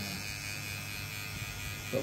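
Electric tattoo machine buzzing steadily as its needle works ink into skin.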